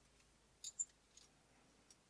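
Near silence, broken by two faint ticks a little over half a second in and a softer one just past a second: a thin steel feeler gauge blade being handled and set between the jaws of a digital caliper.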